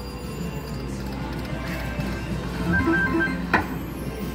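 A circus-themed video slot machine runs a spin: its electronic game music and short chiming tones play over a steady background hum. A single sharp click comes near the end as the reels stop.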